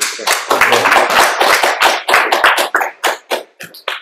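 Audience applauding: many hands clapping at once, thinning out near the end.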